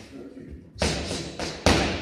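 Two punches smacking into focus mitts, about 0.8 s apart, each a sharp smack that rings briefly in the hall.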